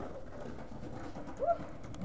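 A single short bird call, rising then falling in pitch, about one and a half seconds in, over low steady background noise.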